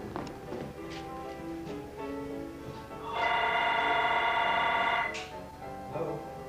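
A telephone ringing over ragtime piano music: one steady electronic ring starts about three seconds in and lasts nearly two seconds.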